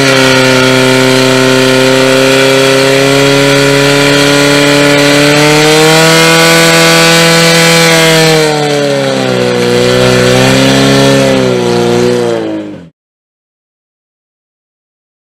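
Portable fire pump engine running flat out at high revs, a loud steady note, while pumping water to the nozzles. About eight and a half seconds in the revs drop and waver up and down, and the sound cuts off abruptly near the end.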